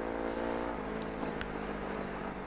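Yamaha Ténéré motorcycle engine running at a steady note, which fades away about a second in, followed by a couple of faint clicks.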